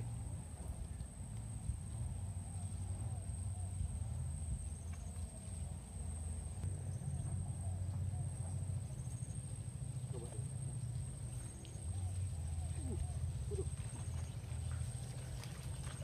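Riverside outdoor ambience: a steady low rumble with a constant thin high-pitched whine above it, faint short chirps, and a brief exclamation about ten seconds in.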